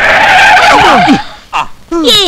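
A lorry's tyres skidding under hard braking: a loud screech lasting about a second. Voices cry out as it ends.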